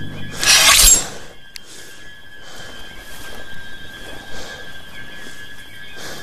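Film soundtrack: a sudden loud crash-like noise lasting under a second, starting just after the beginning, then quiet sustained music with two held notes.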